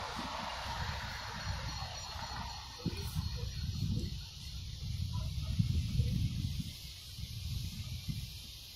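Outdoor street noise: a passing vehicle's sound fades away in the first second or two, then uneven low wind noise buffets the phone's microphone.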